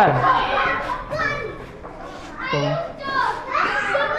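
Children's voices talking and calling in the background, with brief words from an adult man.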